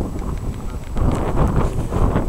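Wind buffeting the camera microphone in uneven gusts, a low rumble that swells about halfway through.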